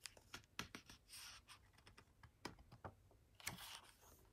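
Near silence with a few faint clicks and soft paper rustling from handling a hardcover picture book, with a page being turned near the end.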